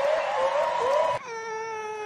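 Audience cheering and applauding with a string of short rising whoops; a little over a second in the crowd noise drops away and a woman's amplified voice holds one long wailing note into a microphone.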